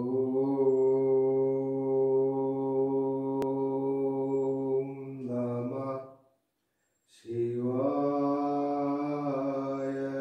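A single low voice chanting a mantra in long held notes. The first steady tone lasts about six seconds and shifts in sound near its end. After a short pause, a second held tone begins about seven seconds in.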